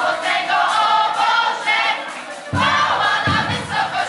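A group of young female and male voices singing a Christmas carol together into microphones. A low, regular beat joins the singing about two and a half seconds in.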